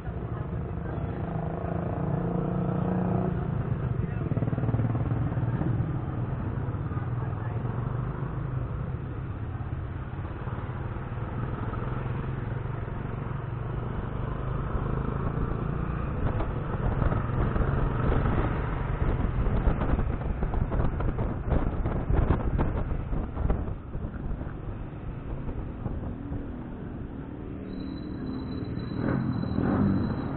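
Yamaha motor scooter engine running steadily while ridden slowly through traffic, with some irregular rattling and knocking about two-thirds of the way in.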